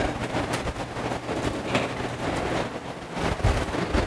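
Thin Bible pages rustling and being turned as someone leafs through the book, with small crackles throughout, over a low steady hum.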